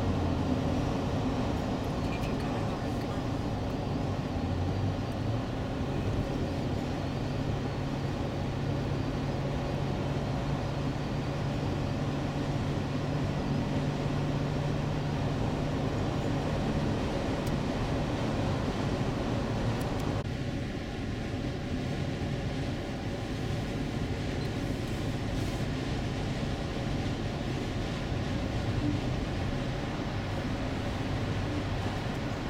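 Steady cabin noise of a 2003 Acura MDX cruising at highway speed: tyre and road noise with a low hum. About two-thirds of the way through, the hiss becomes slightly duller.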